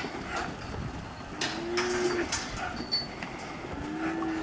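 Holstein cattle mooing: one steady moo of about a second in the middle, and another starting near the end, over a continuous background rustle.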